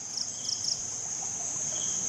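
Insect chorus in vegetation: a steady high-pitched trill, with a few short chirps over it in the first second.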